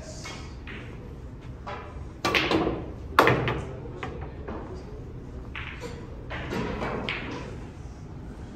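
A snooker shot: a sharp knock of cue and balls about two seconds in, then a louder single crack of the balls colliding about a second later.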